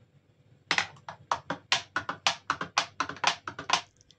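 A steel spoon stirring milk in a glass jug, clinking rapidly against the glass at about five or six knocks a second. It starts about a second in and stops just before the end.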